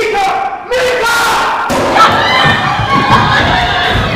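Short shouted cries, then, from about two seconds in, many voices yelling over one another with thumps as a scuffle breaks out on stage.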